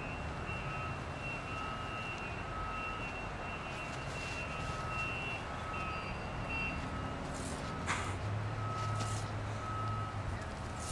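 Vehicle reversing alarm beeping at a steady pitch, a little over once a second. A low engine-like rumble comes in near the end, with a sharp click just before it.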